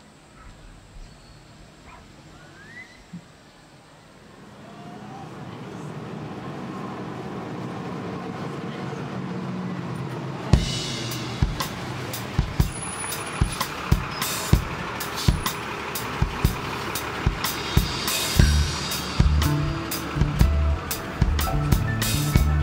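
A live rock band with electric bass, electric guitar and drum kit starting a song. After a few quiet seconds a sustained swell of sound builds up, and about ten seconds in the drums come in with a steady beat as the full band plays.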